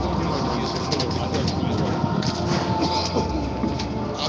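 Outdoor background of a steady low rumble with indistinct voices in the distance.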